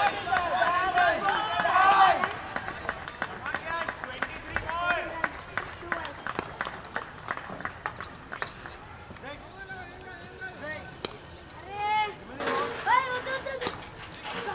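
Cricket players on the field shouting and calling out loudly as the batsmen run, followed by a string of sharp handclaps over several seconds, and another burst of shouting near the end.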